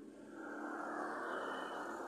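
A car passing, its noise swelling over the first second and then slowly fading.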